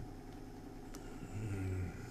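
Quiet room tone, with a short low closed-mouth hum from a man in the second half.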